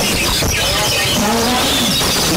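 Oriental magpie-robins and other caged songbirds singing at once, many overlapping chirps and whistles, over a crowd of spectators shouting without pause.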